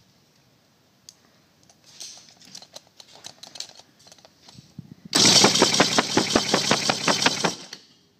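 Outboard engine cranked over by its starter for about two and a half seconds without starting, a loud fast even chugging, as each cylinder is turned over against a compression gauge in a compression test. Before it, light clicks and rattles of the gauge hose being fitted into the spark plug hole.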